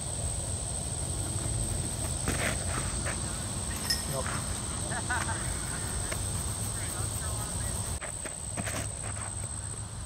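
Open-air ambience: a steady low wind rumble on the microphone, a thin steady high insect drone, and faint distant voices.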